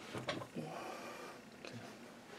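Faint handling noise as paracord and the rifle's stock are handled by hand, with a few light clicks and taps near the start.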